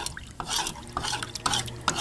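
Metal spoon stirring Epsom salt solution in a plastic measuring cup, with a string of light clinks and scrapes against the cup's sides and bottom.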